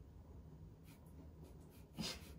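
Near silence with a few faint, brief paper rustles as a cat steps across an open book on a table. A stifled laugh breaks in at the very end.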